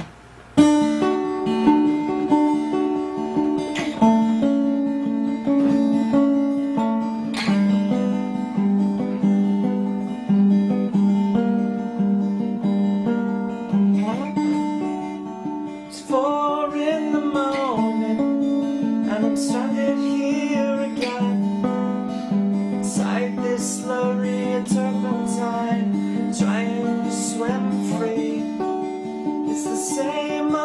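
Acoustic guitar playing a song, a steady pattern of picked chords that begins abruptly about half a second in.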